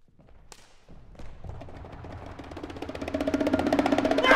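Percussion performance: a few scattered knocks, then a run of rapid strokes that speed up and build steadily in loudness, with a held pitched tone sounding under them.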